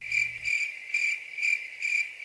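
Crickets chirping in a steady high trill that pulses about twice a second. This is the stock comedy 'crickets' sound effect for awkward silence, marking that nothing is happening.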